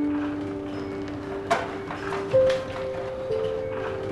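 Soft background music of slow, sustained held notes that change chord a few times, with a couple of faint light knocks in the middle.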